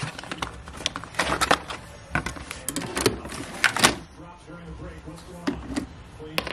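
Plastic clicks and knocks of a Keurig single-cup brewer being worked by hand: the lid handle lifted, a K-cup pod set in and the handle pressed shut, with the loudest clunk near four seconds in.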